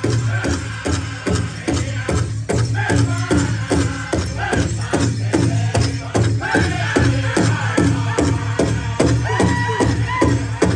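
Powwow drum group performing a song: a large drum struck in a steady beat of about three strokes a second, with men singing over it. Near the end the singers rise to high held notes.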